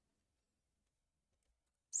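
Near silence, the sound cut out entirely, until a woman's voice starts right at the end.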